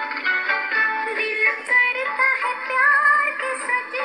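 A song with a singing voice over instrumental accompaniment; about two and a half seconds in, the voice holds a long, wavering high note.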